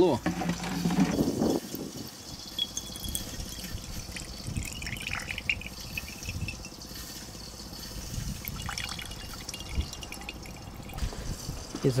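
Light oil distillate trickling and dripping from a steel outlet pipe into a glass beaker, with strong wind buffeting the microphone.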